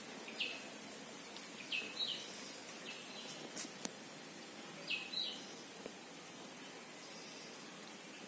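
A small bird chirping: short, downward-sliding calls, several in quick pairs, over a steady background hiss. A single sharp click falls about four seconds in.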